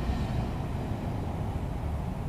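Funicular car coming in along its rails into a tunnel station, a steady low rumble.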